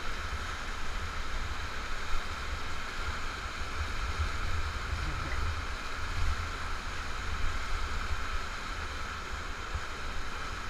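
Whitewater rapids rushing and churning steadily around a raft, with an uneven low rumble underneath.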